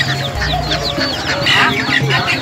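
Many caged birds chirping at once, a dense run of quick high chirps, over background music with steady low notes.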